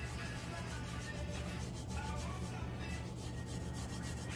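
Gloved fingertips rubbing back and forth over the glitter coat of a tumbler, burnishing the glitter flat. It is a faint, steady scratchy rubbing over a constant low hum.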